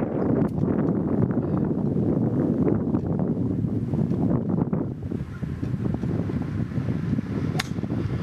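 Wind buffeting the microphone, then near the end a single sharp click of a golf club striking the ball on a full swing.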